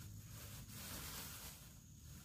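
Faint rustling of a thin plastic bag as a plastic pitcher is pulled out of it.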